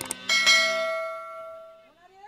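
A single sharp metallic strike a moment in, ringing like a bell with several steady tones that fade out over about a second and a half.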